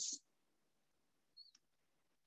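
Near silence during a pause in speech, broken by one faint, very short click about one and a half seconds in.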